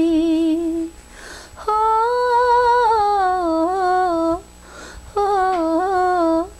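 A woman's solo voice, unaccompanied, humming a slow melody in three held phrases with short pauses between them. The pitch wavers and turns in small ornaments.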